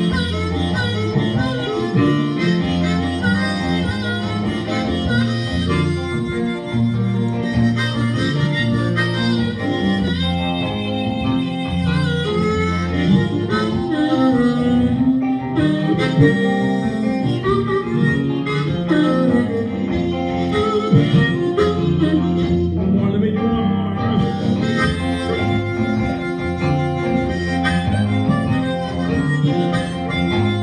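Live blues harmonica solo in F, wailing notes played into a vocal microphone, over a hollow-body electric guitar comping the rhythm.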